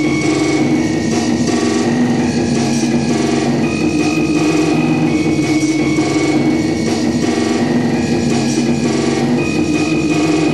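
Loud live noise-rock played through amplifiers: droning tones held at a few fixed pitches, stepping between them every second or two, over a dense, grinding wall of noise.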